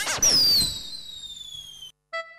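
Comedy sound effects: a short bouncing, warbling sound, then a sudden burst and a long whistle sliding slowly down in pitch, which cuts off abruptly near the end.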